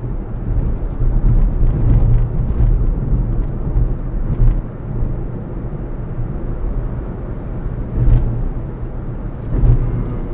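Low, steady rumble of a car driving, heard from inside the cabin. It swells briefly a couple of times, the largest near the end as an oncoming tanker truck passes close by.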